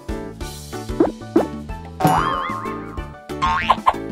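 Cartoon sound effects over children's background music as a treasure box springs open: two quick rising boing-like whoops about a second in, then a wobbling, warbling tone from about two seconds in, and more rising sweeps near the end.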